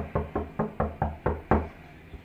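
Knocking on a door: a rapid, even run of about eight knocks, roughly four or five a second, that stops shortly before the end.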